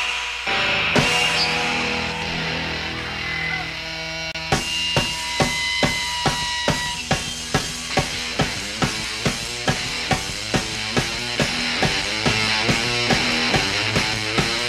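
Live punk rock band on a raw bootleg recording. A brief drop, then held, ringing guitar tones for about four seconds. Then a steady drum beat starts, about two strikes a second, with the guitar playing over it as the next song begins.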